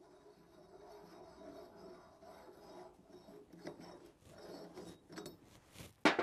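Faint handling of steel attachment pieces on the top of a porta-power hydraulic ram: light rubbing, then a few small clicks and knocks in the last two and a half seconds.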